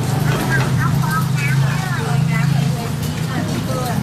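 A steady low engine hum, like an idling motor vehicle, with voices talking in the background.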